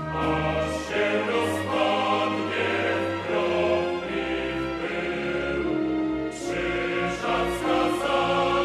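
Choral music: a choir singing sustained chords over bass notes that change every second or two.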